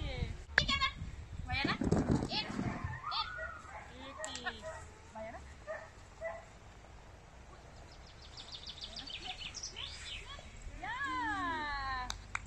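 Excited dog giving high-pitched yelping barks, with a person's voice calling to it; the loudest yelp, falling in pitch, comes near the end.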